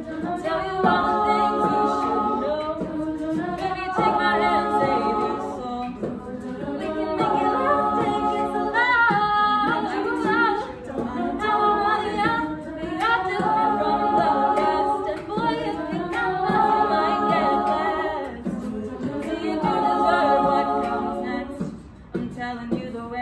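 All-female a cappella group singing sustained close-harmony chords in swelling phrases a few seconds long, with a high voice sliding through a run about nine seconds in.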